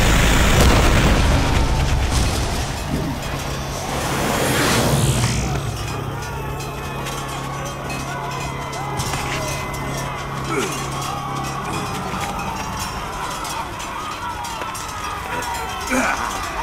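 Film battle-scene soundtrack: a loud deep boom at the start and a whoosh about four to five seconds in, over a low music drone that fades out about twelve seconds in, with shouting voices under it.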